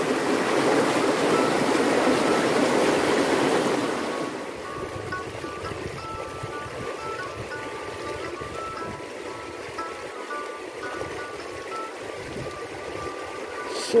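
Shallow rocky stream rushing over stones, loud and close for about four seconds, then softer. From about four seconds in, faint background music with a simple tune plays over the water.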